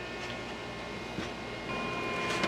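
Faint steady whir and hum of a small computer-style circulation fan running inside a homemade styrofoam egg incubator.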